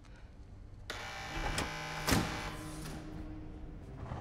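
A motorised door mechanism whirring as it opens. It starts suddenly about a second in, gives a sharp clunk near the middle, and dies away before the end.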